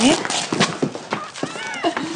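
Quick footsteps and knocks of several people hurrying across a hard floor to a table, with a cardboard box set down, under voices.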